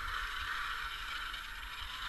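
Electric RC monster trucks' motors and gear drives whirring as they run on ice, a steady rushing whir with a low uneven rumble underneath.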